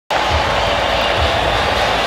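Steady arena noise in a basketball game broadcast, with soft low thumps about once a second.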